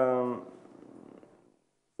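A man's drawn-out hesitation "umm" held on one steady pitch, ending about half a second in and trailing off into silence.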